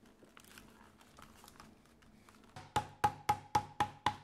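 Faint rustling of leather pieces being handled, then a steady percussive music beat comes in about two and a half seconds in: evenly spaced wood-block-like knocks, about four a second, over a ringing tone.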